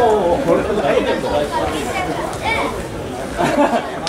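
Indistinct voices of several people talking and calling out over one another, with no clear words.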